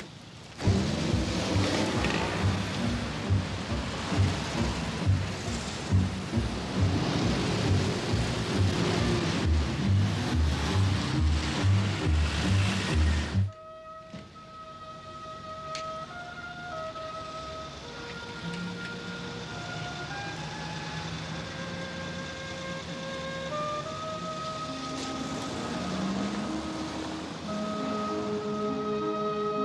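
Loud, dense city-traffic noise mixed with music that has a regular low beat. About 13 seconds in, it cuts off suddenly into softer music with long, held melody notes.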